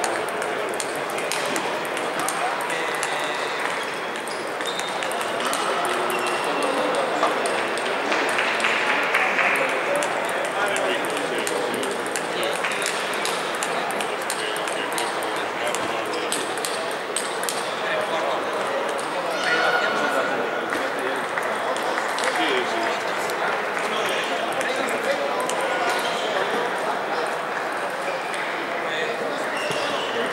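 Table tennis hall ambience: ping-pong balls clicking off bats and tables at many neighbouring tables, irregular and overlapping, over the background chatter of many voices.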